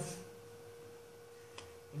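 Quiet room tone with a faint, steady hum held on one pitch, and a single faint click about one and a half seconds in.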